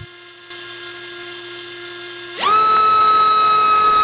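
BrotherHobby Returner R4 2206 2300kv brushless motor on a thrust bench, spinning a Kong 5045 triblade prop. A faint steady tone comes first, then about two and a half seconds in the motor is throttled up quickly to full power and holds a loud, steady, high whine.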